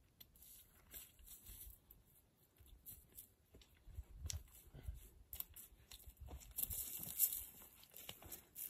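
Faint footsteps approaching over dry dirt and brush: irregular crunches and crackles of twigs and dry grass, with rustling that grows louder near the end as the walker comes closer.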